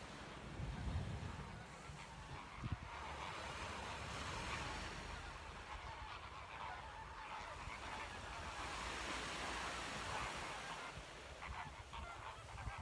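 A large flock of geese honking as they fly overhead, many calls overlapping without a break. There is a low rumble of wind on the microphone in the first second and a single thump about three seconds in.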